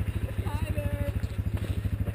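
Quad (ATV) engine idling steadily, an even rapid pulse of about twenty beats a second with no revving.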